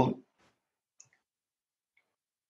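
The tail of a spoken word, then near silence broken by one faint, short click about a second in.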